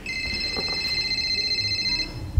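Telephone ringing sound effect: one steady, high electronic ring lasting about two seconds, over low background noise.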